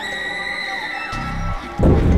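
Dramatic film background score: a held high tone over low bass pulses, then a sudden loud booming hit that swells in near the end.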